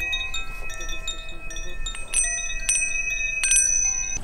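Chimes ringing: several clear metallic tones that sustain and overlap, with fresh strikes setting off new tones through the middle and later part.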